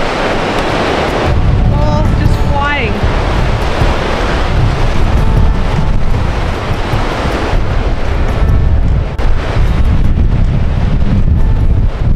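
Heavy wind noise on the microphone over the wash of breaking ocean surf, the wind rumble growing stronger about a second in.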